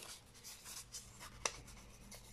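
Faint rustling of a small strip of kraft paper being handled, with the tip of a plastic glue bottle rubbing across it, and one short tick about a second and a half in.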